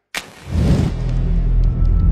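Cinematic logo-reveal sound design: a sharp hit just after the start, then a loud, deep rumble that swells in about half a second in and keeps building.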